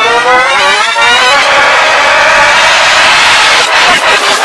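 Loud, heavily distorted, reversed audio effect. A wavering, voice-like pitched sound lasts for about the first second and a half, then gives way to a harsh, continuous noisy blare.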